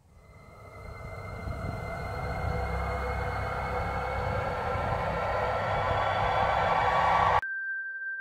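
A sound-design riser: a swell of noise with a low rumble and faint steady tones, growing louder for about seven seconds and cutting off suddenly. Right after it a clear ringing tone, like a singing bowl, begins.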